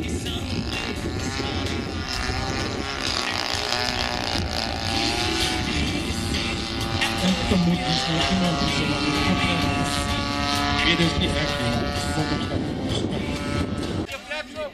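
Radio-controlled model airplane's motor running in flight, its pitch gliding up and down as it throttles and passes.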